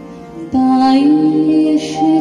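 A woman singing a Bengali song live, a long held note with gently bending pitch coming in about half a second in, over steady keyboard accompaniment.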